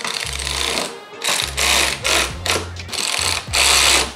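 Cordless electric ratchet running in about five short bursts, tightening the nuts that fix a caster/camber top plate to a car's strut tower.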